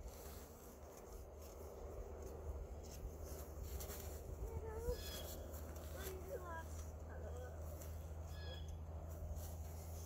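Faint, soft children's voices: a few short, quiet utterances over a low, steady rumble.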